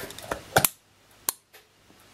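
The Bakelite back of a Komsomolets twin-lens reflex camera being closed and latched: a few small sharp clicks, the loudest just past half a second in and another a little past a second.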